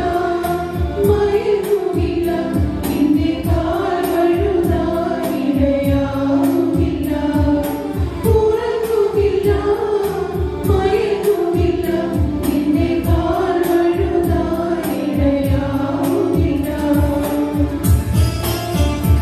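Mixed church choir, mostly women's voices, singing a Malayalam devotional hymn in unison through handheld microphones, over a steady rhythmic beat.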